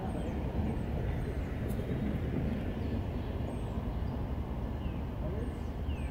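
A train passing a crossing: a steady, even low rumble. Short, high, falling bird chirps sound over it now and then.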